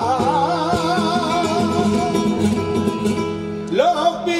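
Flamenco cante: a male singer holds a long, wavering note over a flamenco guitar accompaniment, then his voice slides upward into a new phrase near the end.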